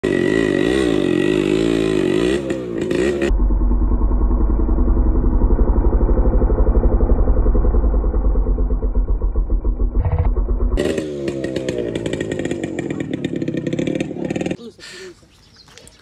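Yamaha RX100's two-stroke single-cylinder engine revving hard under heavy load, straining to tow a tractor by rope while its rear tyre spins. The sound changes abruptly about three seconds in and again near eleven seconds, as at cuts between clips, and drops away over the last second and a half.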